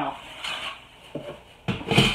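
Handling and movement noise: a light knock about a second in, then a louder rustling scrape near the end as someone leans down and reaches for something.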